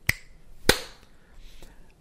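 Two sharp snaps about half a second apart, the second one louder.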